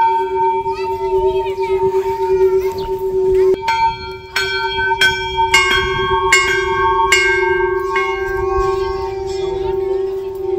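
Large hanging metal temple bells being struck, each strike ringing on in a long sustained tone. A run of strikes comes in quick succession from about four seconds in, roughly two a second, and the ringing carries on to the end.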